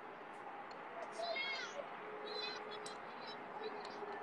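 Faint outdoor background at a football field, with a distant high-pitched yell that falls in pitch a little over a second in and a shorter call about a second later.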